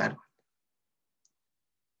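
A man's voice trailing off at the very start, then near silence broken by one faint, brief click about a second in.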